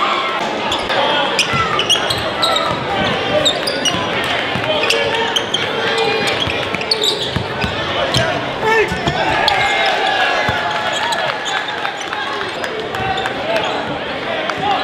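A basketball being dribbled on a hardwood gym floor, under steady chatter from the crowd in the stands.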